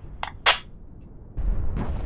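Trailer sound effects: two sharp hits, then about one and a half seconds in a sudden deep boom that keeps rumbling, in the manner of a dramatised air strike.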